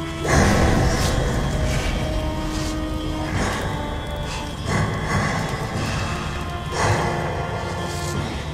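Tense, ominous background music with steady held tones, broken four times by a sudden loud noisy hit that fades over a second or so.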